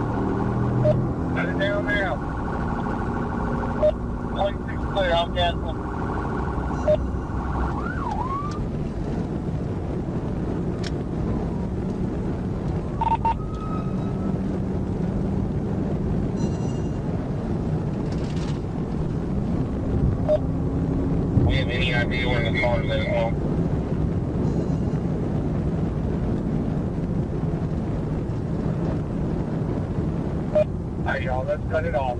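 Steady engine and road noise inside a police cruiser driving at speed in a pursuit. Short warbling electronic bursts come a few times: about a second in, around five seconds, and again at about 21 to 23 seconds.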